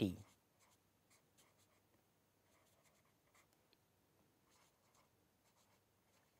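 Felt-tip marker writing on paper: faint, short scratchy strokes as letters are formed.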